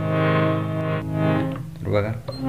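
Harmonium, a hand-pumped reed organ, sounding several notes held together with a steady reedy tone that fades out a little after a second in.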